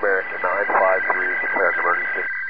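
A voice speaking over a narrow, tinny two-way radio channel, with two steady whistle tones running under it. The voice stops near the end.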